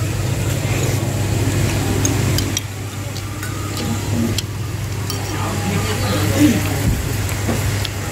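A low, steady motor hum, strongest in the first two and a half seconds, under faint background chatter, with a few light clicks of a metal spoon against a ceramic bowl.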